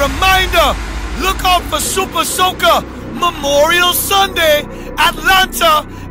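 A voice with pitch sweeping up and down over a steady low drone.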